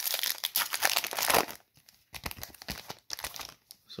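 Foil wrapper of a Topps baseball card hobby pack being torn open and crinkled: a dense burst of crackling for about the first second and a half, then a few shorter crackles.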